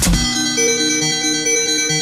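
Techno DJ mix going into a breakdown: the kick drum and hi-hats cut out just as it begins. What is left is sustained synthesizer chords, with a slow line of held notes moving underneath.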